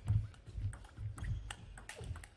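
Table tennis rally: a quick series of sharp clicks as the ball is struck by the rackets and bounces on the table, a few every second, with low thuds underneath.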